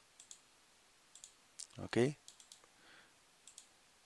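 About eight faint, sharp computer mouse clicks, spread unevenly over a few seconds, made while selecting text in a document.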